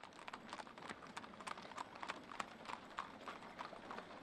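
Shod hooves of several horses clip-clopping on asphalt: a steady stream of sharp hoof strikes at an uneven rhythm from ridden horses and a team pulling a wagon.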